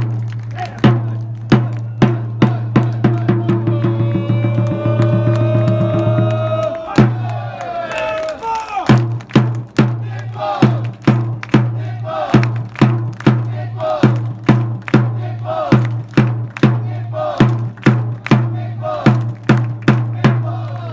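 Football supporters' drum beating about twice a second under crowd chanting. Voices hold one long sung note that breaks off about seven seconds in, then the chant goes on in short phrases over the drum.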